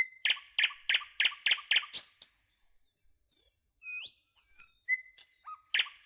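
Bird chirps repeated three or four times a second for about two seconds, then after a short pause a few scattered high whistles, one sharply rising.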